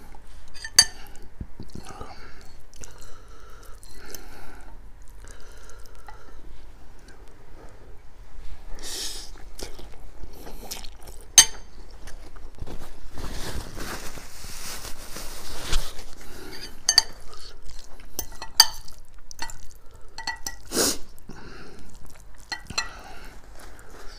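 Close-miked eating sounds: a metal fork clinking and scraping against a ceramic bowl of noodles and prawns, with chewing in between. Near the middle there are a few seconds of rustling as a paper napkin is handled.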